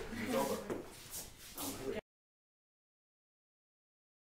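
Indistinct voices in a room for about two seconds, then the sound cuts off suddenly to dead silence.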